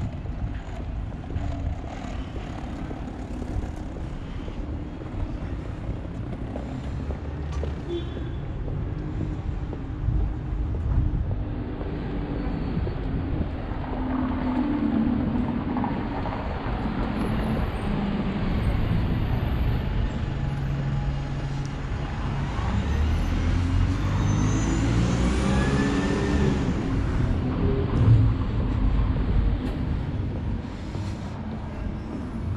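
Street traffic: motor vehicle engines passing, over a steady low rumble. A louder engine drone rises and falls about halfway through and again near the end.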